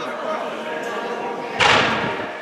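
A firework launch goes off with a single loud thump about one and a half seconds in, over the steady chatter of a crowd of onlookers.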